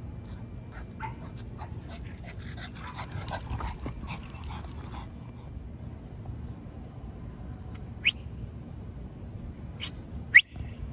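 Small dog giving two short, high-pitched yips near the end, the first and louder about eight seconds in, over faint scattered ticks.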